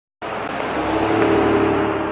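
A car driving along the street: tyre and engine noise that begins suddenly, swells a little and holds steady, with a low engine hum under it.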